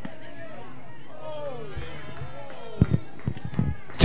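Players and fans shouting encouragement across a softball field: several high voices calling out together in rising and falling calls, with a few sharp knocks in the second half.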